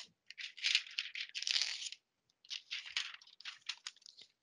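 Sheets of drawing paper being handled and slid about on a desk: rustling and crinkling in two spells of about a second and a half each.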